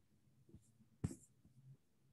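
Near silence with a faint low room hum, broken by one sharp click about a second in and a fainter tick just before it.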